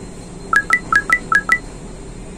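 Short electronic jingle: six quick, clean beeps alternating between two high pitches, played in about one second starting about half a second in, like an edited-in sound effect or ringtone.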